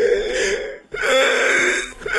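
A man groaning as if in pain, in two long, wavering groans. The first breaks off a little under a second in, and the second follows at once.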